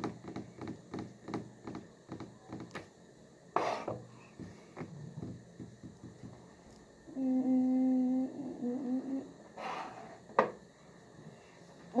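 A person humming: one short steady note about seven seconds in, then a softer wavering hum. A couple of breathy puffs come around it, and a single light click comes near the end.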